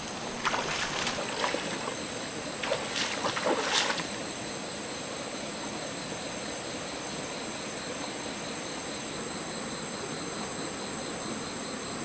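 Water splashing in a few short bursts during the first four seconds as a person wades and works in a shallow stream, then a steady rush of the flowing stream. A steady high-pitched whine runs underneath throughout.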